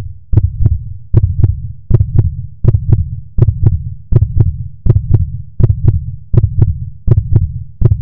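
A heartbeat sound effect on the soundtrack: steady pairs of low thumps with a light click on each beat, about 80 double beats a minute.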